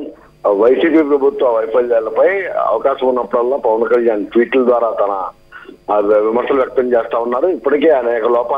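Speech only: a man talking over a telephone line, the sound narrow and thin, with a short pause about five seconds in.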